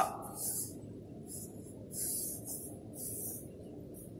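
Pencil scratching on paper in about four separate straight strokes, as lines are drawn.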